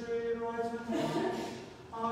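Liturgical chant at Mass: a sung line in slow, held notes, stepping down in pitch about a second in.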